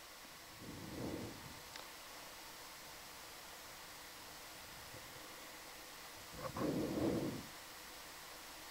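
Steady hiss of a communications line, broken twice by short muffled puffs of noise on a microphone: one about a second in and a louder one near the end.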